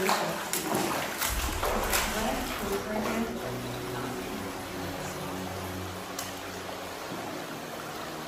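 Steady rush of water running through a limestone cave passage, with a few sharp clicks in the first two seconds and a low steady hum from the middle on.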